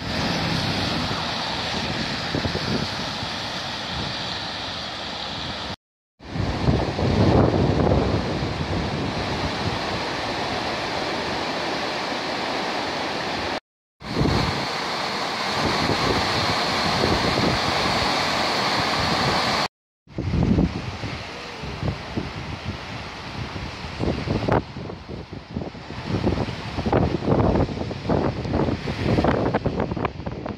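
The River Ogmore in flood: the loud, steady rush of fast brown floodwater, with the water churning over a weir in one stretch. The sound cuts out briefly three times. From about two-thirds of the way in it turns gusty and uneven, with wind buffeting the microphone.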